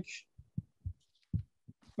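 A pause in a man's speech: a few faint, short low thumps spread over about two seconds, with a soft breath about a second in, before he speaks again near the end.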